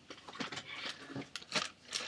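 Product packaging being handled: a scattering of short crinkles and taps as one plastic pack is put down and the next is picked up.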